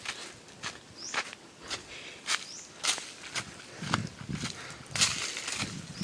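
Footsteps crunching over dry leaves and bare dirt, a step about every half second.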